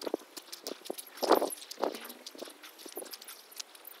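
Footsteps walking over rough stone, a little under two steps a second, the loudest step about a second in.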